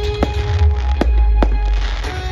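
Aerial fireworks bursting: three sharp bangs over a low, continuous rumble. Music with long held notes plays at the same time.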